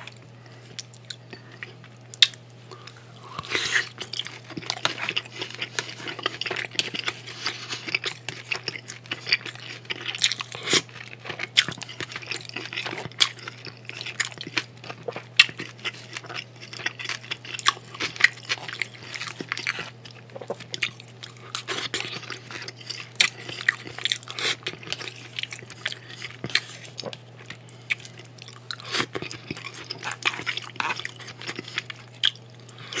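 Close-miked chewing of bites of bacon-wrapped filet mignon, full of crisp crackling clicks and crunches, lighter for the first few seconds and then busy throughout. A steady low hum runs underneath.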